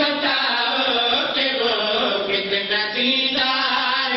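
Male voice chanting a melodic religious recitation into a microphone, with no break.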